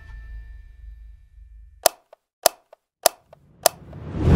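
Music fades out, then four sharp, evenly spaced clicks about six-tenths of a second apart, like a count-in, before music starts again at the very end.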